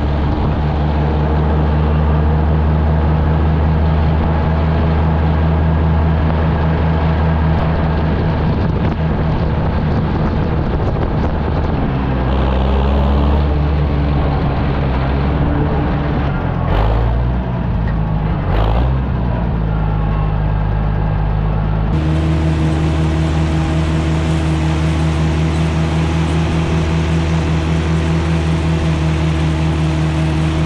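Oliver 880 tractor's six-cylinder engine running steadily under way. Its pitch shifts and wavers for several seconds in the middle of the clip, with two knocks, then it settles into a steady pull under load with the grain drill.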